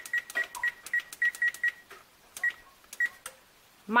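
Electric range's oven control panel beeping with each press of the temperature-up key as the oven is set higher: a quick run of short high beeps, then two more spaced beeps.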